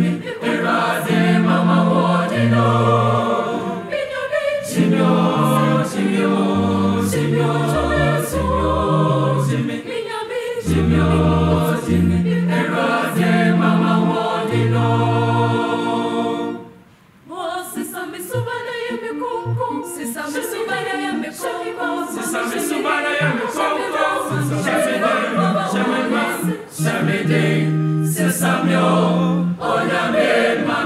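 Mixed choir singing a gospel song in parts over long held low bass notes. The singing breaks off for a moment just past halfway, then goes on.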